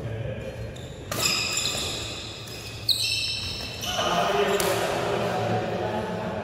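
Badminton rally on an indoor court: sneakers squeaking on the court floor in short high squeals, with a single sharp racket hit on the shuttlecock about three seconds in.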